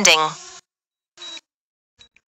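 The DJI Fly app's synthesized voice prompt 'Landing' ends just after the start, as the auto-landing begins. About a second later comes a short electronic blip with a high tone.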